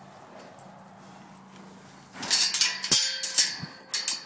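A horse right at the microphone: after a quiet start, loud breathy blowing and sniffing begins about two seconds in, with a sharp knock partway through.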